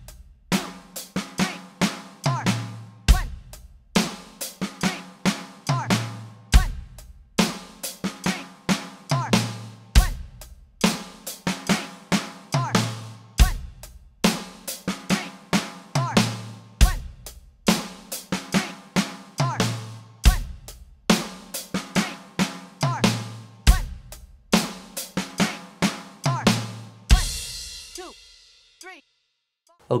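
Roland electronic drum kit playing a rock groove at 70 beats per minute: eighth-note hi-hat, offbeat snare and kick, with each bar closing on the short rack-tom-and-snare fill. The pattern repeats about every three and a half seconds and ends near the end on a crash cymbal that rings out for about two seconds.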